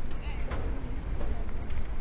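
Outdoor walking ambience: indistinct voices of passers-by over a steady low rumble of wind on the microphone, with a few footsteps on the pavement.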